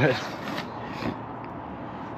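Paper envelope being handled and worked open by hand: soft rubbing and scraping of paper, with a couple of faint brief rustles.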